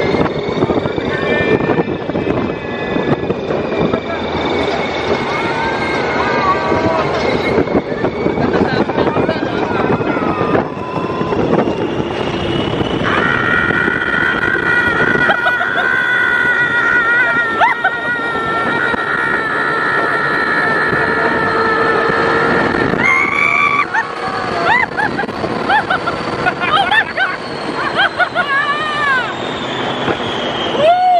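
Riders screaming and whooping on a fast open-air Test Track ride vehicle, with wind rushing over the microphone and a high whine from the vehicle that rises and falls. A long held scream fills the middle, then shorter whoops near the end.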